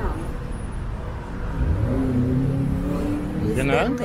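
Street traffic with a car engine accelerating: its low note rises about one and a half seconds in, then holds steady for a second or two. A man says "da" near the end.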